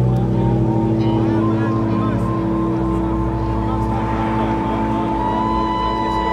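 Live band music from a stage PA, heard from the crowd: long held notes over a low drone, with a violin line wavering on top. Voices in the crowd can be heard near the microphone.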